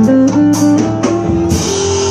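Live instrumental worship music: a sustained melody moving note to note over a steady bass, with regular drum and cymbal hits.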